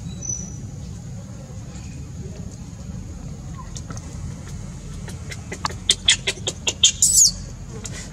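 Baby macaque crying: a rapid run of short, sharp high-pitched squeals starting a little after five seconds in, ending in a longer rising-and-falling screech near the end. A steady low rumble sits underneath.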